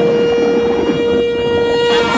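A conch shell (shankh) blown in one long, steady note, with a rough, noisy background rising beneath it.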